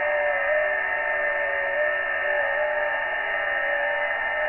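HF radio receiver audio: a steady band-limited hiss that cuts off above about 3 kHz, with several steady whistling tones from signals in the passband.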